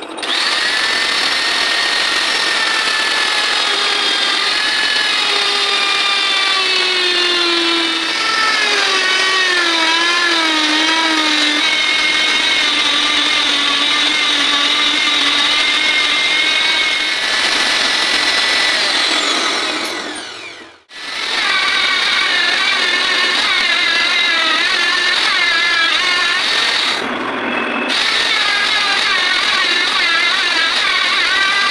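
Electric grinder mounted on a lathe's tool post, running with a steady high whine whose pitch wavers as the wheel grinds a cutter spinning in the chuck. The sound breaks off briefly about two-thirds of the way through, then carries on.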